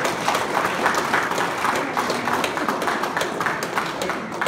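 A small group of people clapping, a dense run of irregular claps in a hall.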